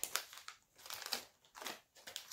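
Small clear plastic bags of jewelry findings crinkling as hands shuffle and pick through them, in several short rustling bursts.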